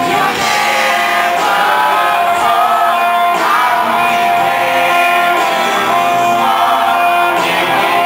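Live pop ballad: a man singing into a microphone while playing an acoustic-electric guitar, heard in a large concert hall.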